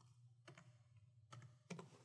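Faint computer keyboard keystrokes: a few separate key clicks as digits of a verification code are typed.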